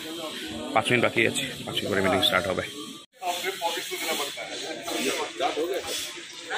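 People talking, with a hiss behind the voices. The sound cuts out abruptly for a moment about three seconds in, then the talking resumes.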